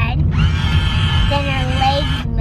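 Battery-operated walking toy pony giving off its electronic sound, one sustained pitched note lasting under two seconds, over the steady low hum of a moving car.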